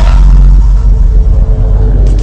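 A loud, deep, steady rumble from a cinematic logo-reveal sound effect, with faint music above it.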